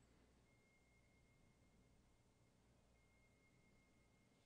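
Near silence: a faint low hum, with a very faint thin high tone that comes and goes.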